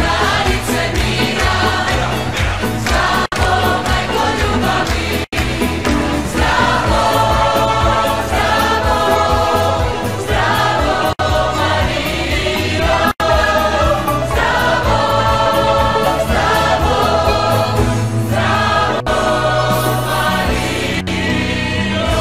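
Choir singing a religious song with instrumental accompaniment and a pulsing bass line. The sound cuts out for an instant four times.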